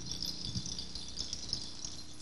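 Quiet, steady rattling of a hand percussion shaker, with a few faint low taps.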